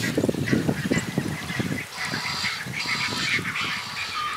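A dense chorus of short, low animal calls overlapping irregularly, with some thinner high-pitched calls joining in the second half.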